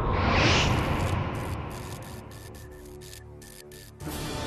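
Film score fading down: a whooshing sweep at the start, then a held chord under a pulsing high shimmer that dies away.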